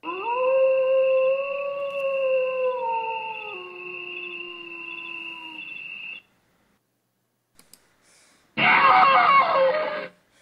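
A long, drawn-out howl that rises at first and then slides down in steps, with a steady high tone held over it; it cuts off suddenly about six seconds in. Near the end comes a loud, rough burst of sound lasting about a second and a half.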